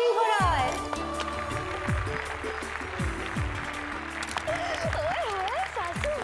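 Dramatic background score with deep drum hits that fall in pitch and held tones, over audience applause. A voice comes in over it about four and a half seconds in.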